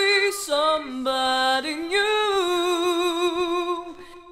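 Female R&B lead vocal sung a cappella, without backing instruments, ending in a long held note that stops just before the close.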